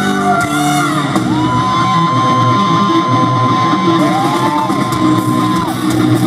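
Heavy metal band playing live in concert, loud and dense, with a long high note held steady for about four seconds from about a second in.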